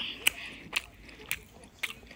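Chewing sounds for a puppet eating a chicken nugget: four short, sharp mouth clicks about half a second apart.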